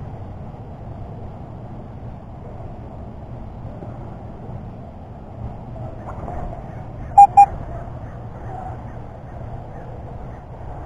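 Metal detector giving two short, loud electronic beeps in quick succession about seven seconds in, over steady low background noise.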